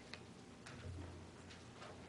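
Near silence: faint room tone with a few soft, irregular clicks.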